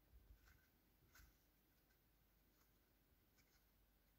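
Near silence, with a few faint clicks and scratches of a steel crochet hook working through cotton yarn, about half a second and a second in.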